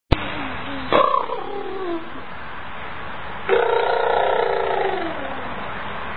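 A baby laughing: a short laugh about a second in, then a longer, louder laugh from about three and a half seconds in that trails off. A sharp click at the very start.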